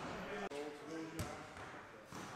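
Indistinct voices in a gym, with a sharp thud of training equipment about a second in.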